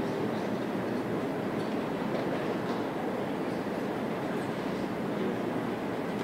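Steady background noise of a large tournament playing hall, an even rumbling hiss with a few faint ticks now and then.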